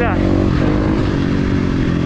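Dirt bike engine running at a steady, nearly constant pitch, heard from the rider's onboard camera as it rides a motocross track.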